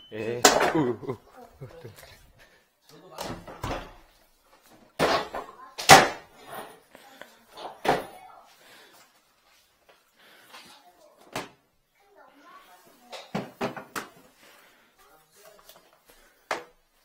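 A series of scattered knocks and clunks as equipment is carried in and set down, and doors and fittings are handled in a small tiled room; the loudest knock comes about six seconds in. A voice is heard briefly at the start.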